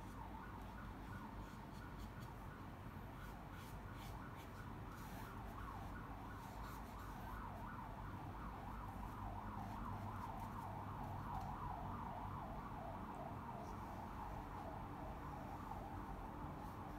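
Faint siren, its pitch rising and falling quickly about three times a second, getting a little louder after the middle.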